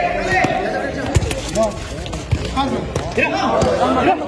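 A football being kicked and bouncing on a concrete court, with a few sharp thuds, the strongest about a second in. Players and spectators shout and chatter throughout.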